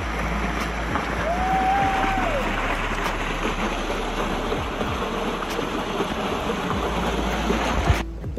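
Water rushing down an open water slide as a rider slides through it: a loud, steady rush. About a second in there is a brief single tone that falls away at its end.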